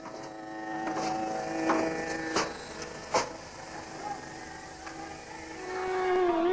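A steady, sustained droning musical note with even overtones, held without change of pitch, typical of a dhrupad drone or held note. A few sharp clicks fall in the first half.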